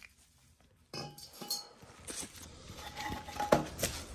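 Metal boiler parts being handled: a run of light clinks and scrapes with short metallic ringing, starting about a second in, with a couple of sharper knocks near the end.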